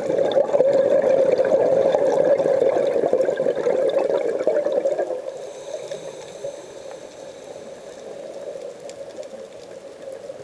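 A scuba diver's regulator exhaling a burst of bubbles underwater. The bubbling rush is loud for about the first five seconds, then drops to a quieter stretch with a faint high hiss as the next breath is drawn in.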